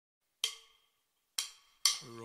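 Three sharp, wooden-sounding clicks, each with a brief ring. The first two are about a second apart and the third comes half a second later.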